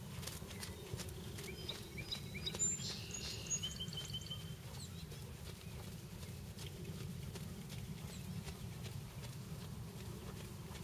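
A horse trotting on a sand arena, its hoofbeats soft over a steady low background rumble. A bird gives a brief burst of high chirps about two seconds in.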